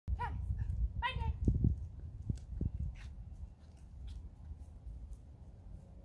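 A hound dog giving two short high-pitched yips, one right at the start and one about a second in that falls in pitch.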